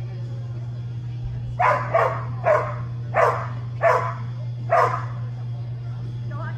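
A dog barking six times in quick, uneven succession, over a steady low hum.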